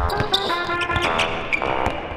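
A basketball dribbled on a hardwood gym floor, several quick bounces in a row, over background music.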